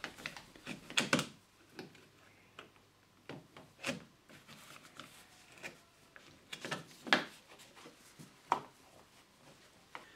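Plastic cover of a Surestop remote water switch being pressed and clicked onto its wall box by gloved hands: a handful of short, sharp clicks and knocks spread out, with faint rubbing of gloves on plastic between them.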